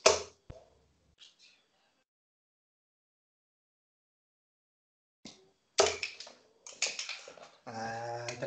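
A steel-tip dart striking a bristle dartboard with one sharp hit, followed by a few faint clicks. About five seconds later comes a short run of clicks and knocks as the darts are pulled out of the board.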